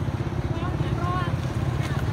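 A motorcycle engine idling steadily close by, with people in a crowd talking over it.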